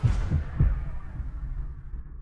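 Three deep bass thumps in the first second, then a low rumble dying away: a produced bass-hit sting ending the outro.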